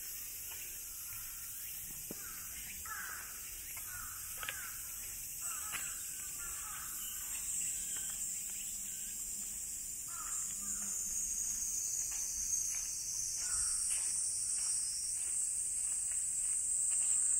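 Footsteps on stone steps and then a dirt path, at a steady walking pace. A constant high-pitched drone of cicadas runs throughout and grows louder near the end, with a few harsh bird calls in the middle.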